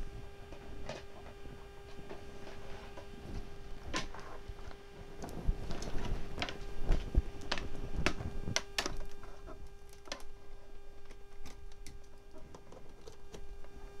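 Scattered clicks and knocks of a tabletop ironing board and a small craft iron being set down and arranged on a table, with the louder knocks in the middle. A steady faint hum runs underneath.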